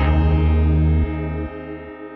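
Instrumental hip-hop beat at a break: the drums drop out and held chords ring on over the bass. The bass stops about halfway through, and the chords grow quieter toward the end.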